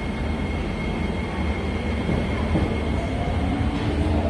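Singapore MRT electric train at the station platform: a steady rumble, and a motor whine that comes in about three seconds in.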